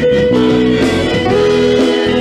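Small choir singing a song in slow, held notes with instrumental accompaniment.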